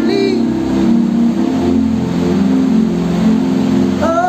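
Live worship band music: held chords from the accompanying instruments carry on between sung phrases, with a short bending sung note at the very start.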